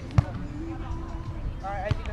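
Two sharp slaps of a volleyball being struck by players, about a second and a half apart, the first the louder. Players' voices call out near the second hit.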